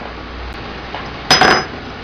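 A brief clatter of small hard objects: a few quick clinks close together with a faint ringing, about a second and a half in, over steady workshop room noise.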